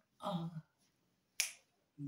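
A man's voice singing one word unaccompanied, then a single sharp finger snap about a second and a half in.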